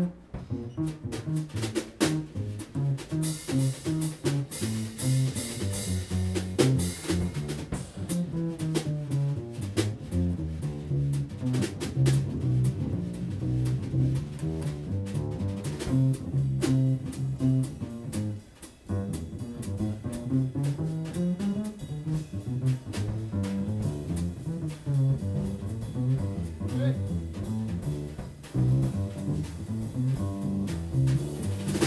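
Live jazz double bass solo: a run of short, plucked low notes on the upright bass, with light drum-kit and cymbal accompaniment and no saxophones.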